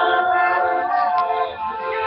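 Music: a song with several voices holding long notes in harmony.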